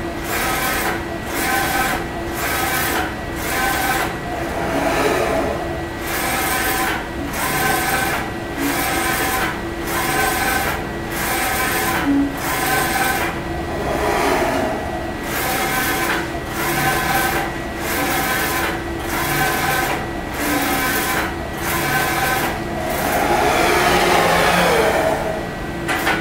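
EXILE Spyder II direct-to-screen inkjet printer running a print: the print-head carriage shuttles across the screen in quick, even passes, about two a second, each with a short break at the turn, over a steady motor whine. It is printing simple text at its higher speed.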